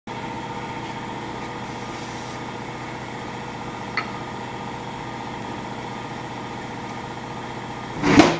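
A steady machine hum with an unchanging pitch, like a motor running, with one short click about halfway through.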